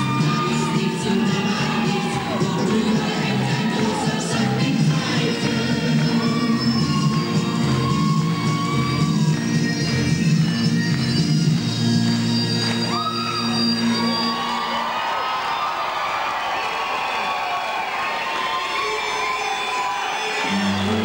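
Stage music with an audience cheering and whooping over it. About fifteen seconds in the music's low accompaniment stops, and the crowd's cheering carries on.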